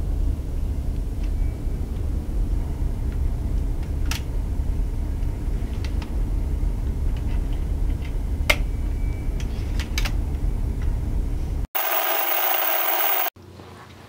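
A steady low rumble with a few sharp clicks as a DVD is loaded into a laptop's disc tray. Near the end the sound cuts out suddenly and a burst of video static hisses for about a second and a half.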